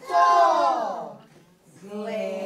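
Young children's voices calling out together in one loud shout that falls in pitch and lasts about a second, then a brief lull before voices start again near the end.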